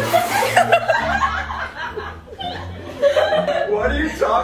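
People laughing and chuckling, with bursts of laughter on and off.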